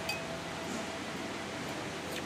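A metal spoon clinks once against a plate right at the start, with a brief high ring, over a steady background hiss.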